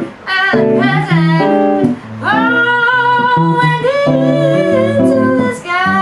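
Jazz duo performance: a woman singing with electric guitar accompaniment, the guitar playing chords and stepping bass notes. From about two seconds in she holds one long sung note.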